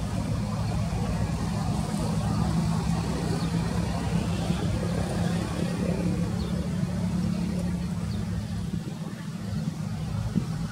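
An engine running steadily, a low even hum that holds through the whole stretch.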